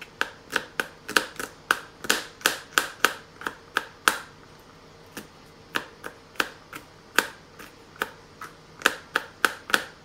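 Small knife chopping garlic cloves on a plastic cutting board: irregular sharp knocks, two or three a second, with two brief pauses in the middle.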